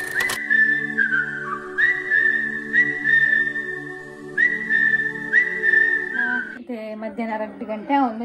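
Channel intro jingle: a high whistled melody of short, repeated notes over held chords, stopping about six and a half seconds in, after which a woman's voice starts.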